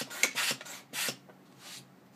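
Hand-held balloon pump being worked quickly, each stroke a short rush of air from its nozzle: about five strokes in the first second, then one fainter one a little later.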